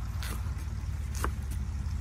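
Chef's knife chopping through leafy greens onto a wooden cutting board: a few crisp strokes about a second apart, over a steady low rumble.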